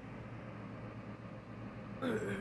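Steady background hum with an even hiss, with no distinct event in it.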